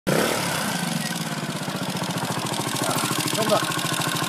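Trials motorcycle engine idling steadily, with an even, fast firing beat.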